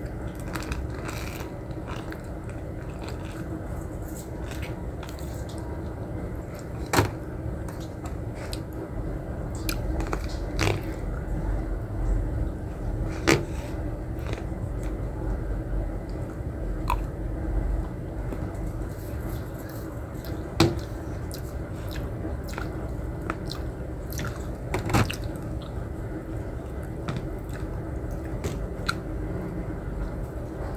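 A person chewing and biting food close to the microphone, over a steady faint hum. A sharp click comes every few seconds, about five in all.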